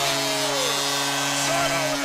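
Arena goal horn sounding a steady low blast after a goal, over dense crowd noise.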